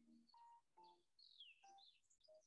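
Very faint, soft background music: scattered short, bell-like notes with a few high chirps that slide down in pitch.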